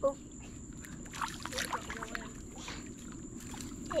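Quiet pond-side background: a steady low rumble with a few faint, soft water sounds between about one and three seconds in, as turtles and fish break the surface.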